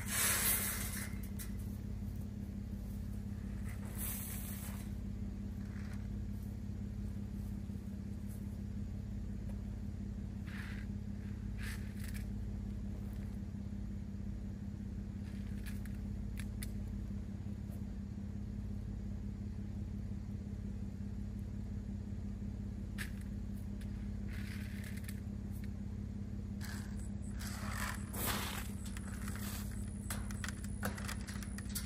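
A steady low engine or motor hum running throughout, with scattered short scrapes and clicks over it.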